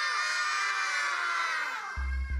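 A group of children shouting and cheering together, many high voices at once, tailing off near the end.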